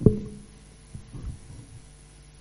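A sharp knock with a brief low ringing after it, then a few softer thuds about a second later: handling noise on the microphone or recorder.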